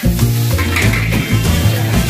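Background music with a repeating bass line, over food sizzling as it is stirred in a pan, with short scraping strokes.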